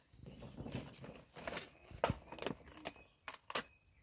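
Rustling and crackling of banana leaves as they are grabbed and pulled from the plant, with a few sharp clicks.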